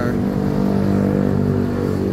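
A motorcycle engine running steadily as it passes along the street.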